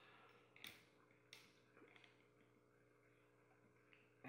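Near silence: a faint steady hum with a few soft clicks as doubled-over rubber bands are stretched tight over the plastic pegs of a Rainbow Loom.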